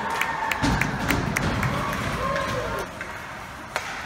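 Spectators in an ice rink clapping and voices calling after cheering. The clapping is brisk in the first half and dies away, and one sharp knock comes near the end.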